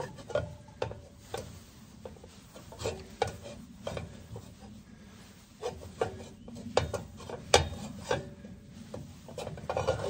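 A cloth rag scrubbing the wet inside of a stainless steel skillet, rubbing off stuck-on food, with irregular scraping strokes and light clicks of the metal pan.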